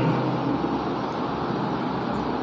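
Steady hiss of room background noise, with no speech and no distinct events.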